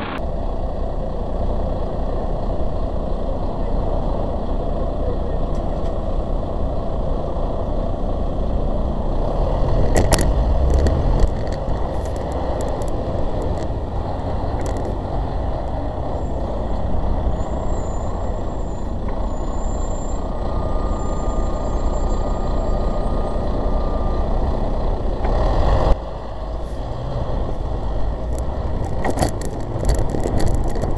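Road traffic close by: car and bus engines running in a queue, a steady rumble with a few sharp clicks.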